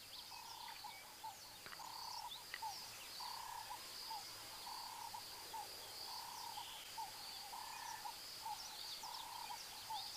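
Faint outdoor wildlife ambience: a short call repeating about once a second, a steady high-pitched hum and scattered bird chirps.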